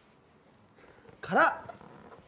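About a second of quiet room, then one short called-out word from a man's voice, its pitch rising and falling.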